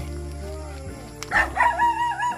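A rooster crowing once, a held call of about a second starting just past the middle, over steady background music.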